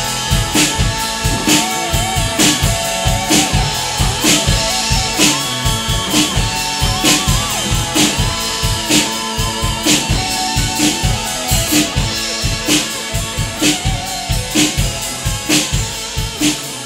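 Acoustic drum kit played live over a recorded rock song with electric guitar. It is a steady rock beat, with a strong hit about once a second under washing cymbals.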